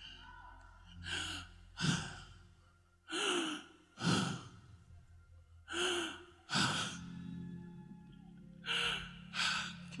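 A man breathing heavily and close into a handheld microphone: about four pairs of deep breaths in and out, a couple of seconds apart, winded after preaching hard.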